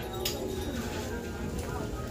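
Store room tone: a low steady rumble with faint voices in the background.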